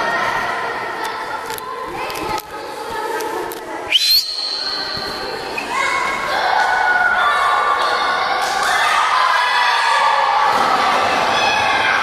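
Children shouting and calling out together in a reverberant gym hall during a frisbee game, growing busier from about six seconds in, with scattered thuds of feet and the frisbee on the wooden floor. A brief shrill high note rises and holds about four seconds in.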